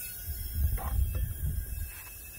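Propane hissing steadily through a refill adapter from a 20 lb tank into an empty 1 lb propane bottle as the bottle fills, over an uneven low rumble.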